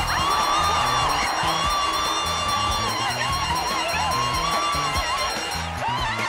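Upbeat game-show music with a repeating bass line under a held, wavering high melody.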